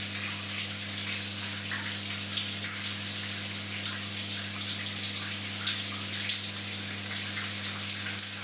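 Walk-in shower running steadily, its spray splashing on a person and the tiled floor, over a steady low hum.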